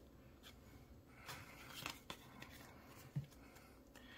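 Faint rustling and a few soft, scattered clicks of trading cards being handled and sorted by hand, over quiet room tone.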